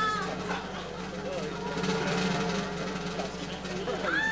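Studio audience murmuring and reacting, scattered faint voices with no clear words, over faint background music.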